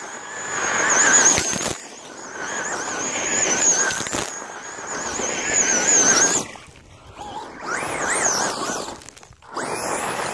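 Traxxas Rustler VXL RC truck's brushless electric motor and drivetrain whining at a high pitch that wavers with the throttle, with gravel spraying and crunching under the tyres as it drives and slides. About six and a half seconds in the whine drops away briefly, then comes back rising and falling in pitch.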